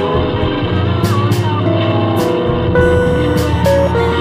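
Live music through a PA system: a woman singing into a microphone over backing music with a regular beat.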